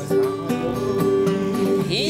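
Acoustic guitar strumming chords in a short instrumental break between the sung lines of a bard song.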